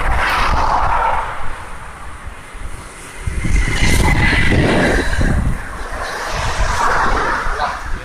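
Road traffic of cars and motorbikes passing on a bridge roadway close by, under a steady low rumble. One vehicle passes loudest about three to five seconds in.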